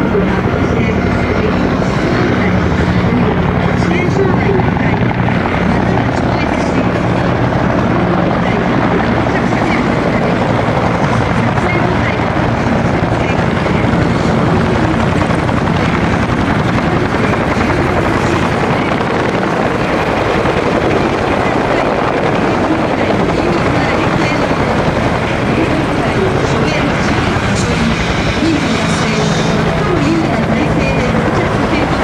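Several UH-1J helicopters flying in low and setting down, their two-blade main rotors and turbine engines making a loud, steady sound.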